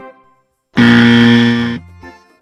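A loud buzzer sound effect held for about a second, starting about three-quarters of a second in and cutting off sharply, after a few notes of children's background music.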